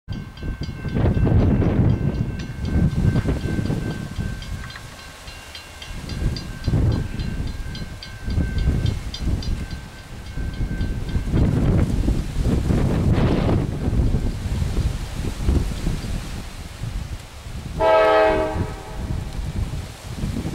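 CSX EMD SD70M diesel locomotive's air horn sounding one short blast near the end, over a low gusting rumble. Until about halfway a faint steady high ringing with fast even ticks runs underneath.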